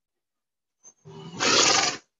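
A horse blowing out hard through its nostrils: a rough breath that starts low about a second in, swells loud for about half a second, then cuts off.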